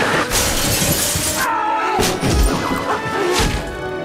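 Trailer music with slapstick sound effects: a long crash of shattering glass in the first second and a half, then falling whistle-like glides and a sharp thud about two seconds in.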